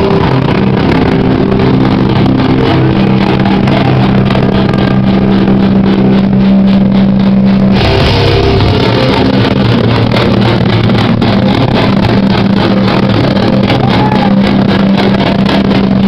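Metallic crust band playing live and loud: distorted electric guitars holding low sustained notes over fast drumming. The riff changes about eight seconds in.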